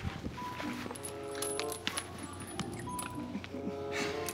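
Soft background music of held, gentle notes, with scattered light metallic clinks from the swing's chains as it moves.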